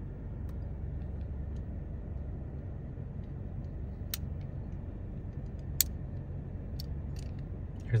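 Steady low hum inside a car cabin. A few sharp clicks come from a small diecast model car being handled and turned over, about four seconds in and again near six and seven seconds.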